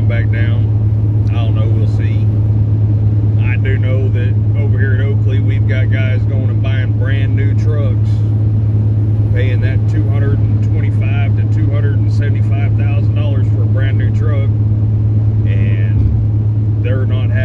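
Steady low drone of a semi-truck's engine and road noise inside the moving cab, unchanging throughout, under a man's talk.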